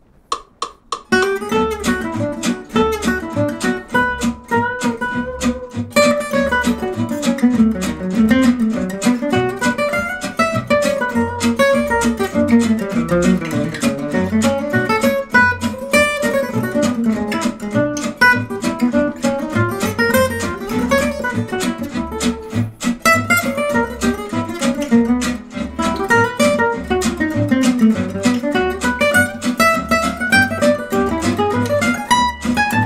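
Oval-soundhole gypsy jazz guitar playing a single-note swing solo of running eighth-note lines in D. Behind it is a steady rhythm-strum and bass-line accompaniment that comes in about a second in.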